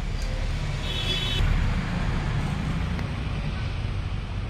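Low, steady rumble of road traffic with a short, high-pitched vehicle horn toot about a second in.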